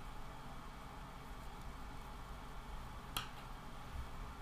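Faint steady room hiss with one short, sharp click about three seconds in.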